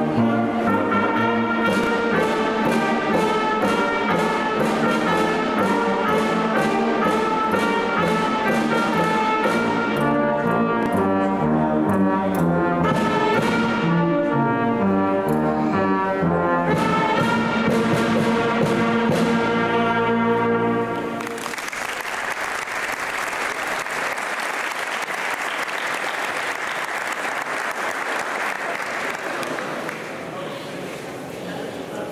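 Youth wind band, with trumpets, saxophones and sousaphone, playing a piece with a steady beat; it ends about two-thirds of the way in. Audience applause follows through the rest.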